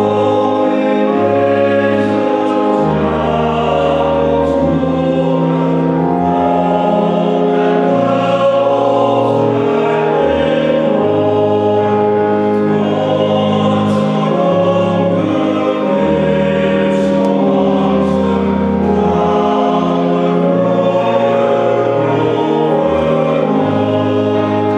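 Men's choir singing a hymn in sustained chords with organ accompaniment, in a reverberant church.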